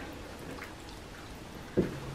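Faint soft sounds of a silicone spatula spreading thick cheese sauce over sliced turnips in a ceramic casserole dish, over quiet room tone, with a short thump near the end.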